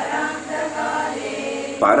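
Several voices chanting a line of a Sanskrit Upanishad verse together in drawn-out recitation, repeating it after the teacher.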